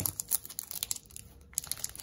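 Foil wrapper of a Pokémon trading-card booster pack crinkling and crackling in the hands as it is picked at and pulled, not yet tearing open. It is a quick run of small crackles that thins out briefly past halfway.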